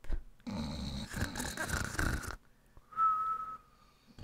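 Comic cartoon-style snore: a rough snoring breath lasting about two seconds, then, a second later, a short steady whistle on the out-breath.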